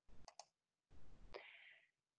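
Near silence with a few faint clicks at the start, then a soft, short intake of breath in the second half.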